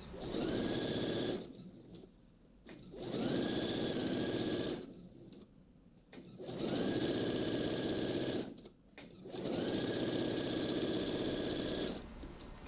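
Computerized domestic sewing machine stitching a seam. It runs in four bursts with short stops between them, and its motor speeds up at the start of each run.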